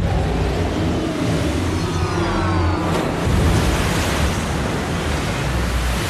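Film sound design of a huge alien steel ship surging up out of the sea: a loud, deep rumble with rushing, churning water and some sliding tones about two seconds in.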